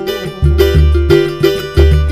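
Live samba: a cavaquinho strumming over the jingling strokes of a pandeiro and the deep, regular beat of a tantã drum.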